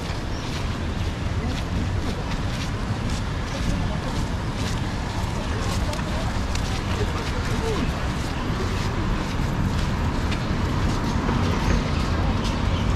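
Steady wash of ocean surf and street traffic noise, with faint voices of passers-by and scattered footstep ticks.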